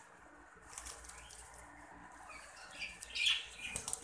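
Pigeons flapping their wings, a flurry of wingbeats that grows louder about three seconds in.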